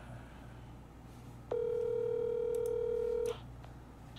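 Telephone ringback tone from an outgoing call, heard over speakerphone: one steady beep about two seconds long, starting about a second and a half in.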